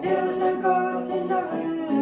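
Voices singing a liturgical song unaccompanied, in held notes that step to a new pitch about every half second.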